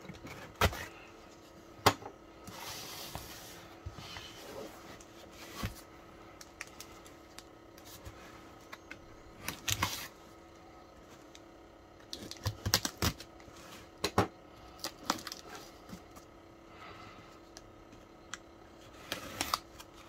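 A taped cardboard parcel being handled and turned over: scattered taps and knocks on the box with a few short scraping rustles, over a faint steady hum.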